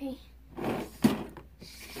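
Handling noise close to the microphone: a rush of noise, a sharp knock about a second in, then a short high hiss near the end.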